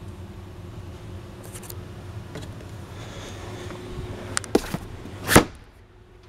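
A few light knocks, then one loud thump a little over five seconds in as the boat's padded engine-compartment hatch is shut, over a steady low room hum.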